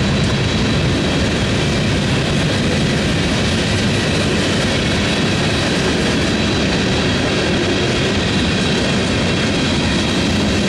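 A CSX freight train rolling past at close range: the last of the locomotives, then boxcars and tank cars, with a steady, loud noise of steel wheels on rail.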